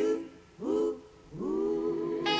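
A wordless vocal hum in the song's outro: three short phrases, each sliding up into a held note, over sparse backing.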